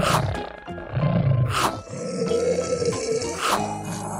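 Background music with a growling roar sound effect laid over it, coming in loud bursts.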